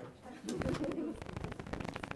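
Indistinct murmur of people talking among themselves in a large meeting room, with a few faint knocks.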